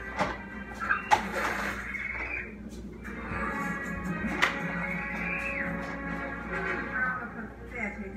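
Television playing a film soundtrack in the background: music with voices over it, with two sharp clicks, one about a second in and another about four seconds in.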